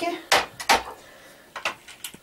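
Kitchen utensils knocking and clinking against a bowl as ground horseradish is tipped into the ground tomatoes: two sharp knocks in the first second, then a few lighter taps near the end.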